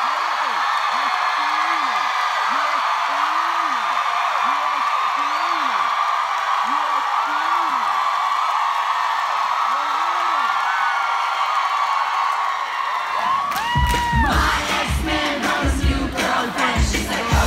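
Large crowd screaming and cheering steadily, with individual whoops rising and falling through the din. About 13 seconds in, loud amplified pop music with a heavy beat starts over the cheering.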